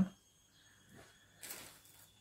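Mostly quiet, with a brief soft rustle about one and a half seconds in from hands handling the knitted ball and its polyester toy stuffing.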